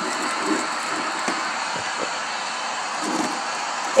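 Steady background hiss, with a few faint soft knocks of plastic action figures being handled in a foil-lined toy ring.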